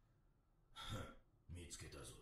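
Near silence, then a faint sigh about a second in, followed by a short, quiet spoken line.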